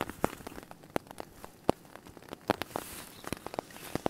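Irregular raindrops pattering and ticking on a tarp overhead after heavy overnight rain.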